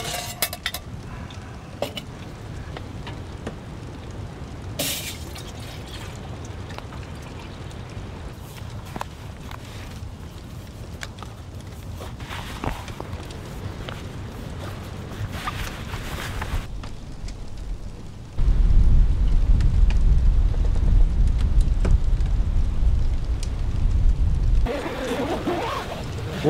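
Quiet handling sounds with scattered light clicks and taps, then strong wind rumbling on the microphone that starts suddenly about eighteen seconds in, lasts about six seconds and is the loudest part.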